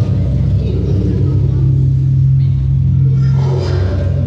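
A loud, steady low drone held the whole time, part of the recorded backing soundtrack for a stage drama, with fainter higher tones coming in near the end.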